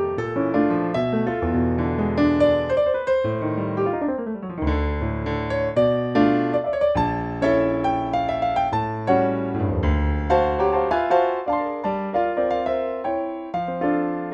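Roland RP102 digital piano playing its default concert piano sound: a jazz piece in chords and melody over bass notes, with a fast descending run about four seconds in.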